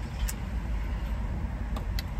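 Low, steady rumble of vehicles with a light hiss, heard inside a parked car with the windows down, with a couple of faint clicks.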